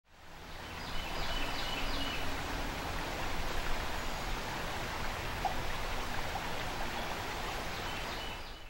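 River water running: a steady rushing hiss that fades in over the first second and holds evenly.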